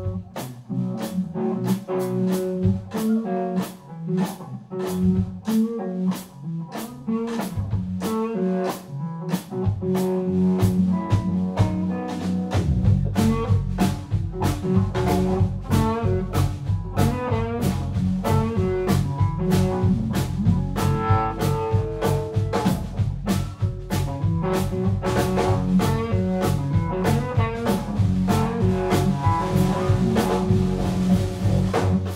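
Live blues-rock trio playing an instrumental passage: electric guitar over a steady drum-kit beat. The bass guitar comes in about twelve seconds in and fills out the low end.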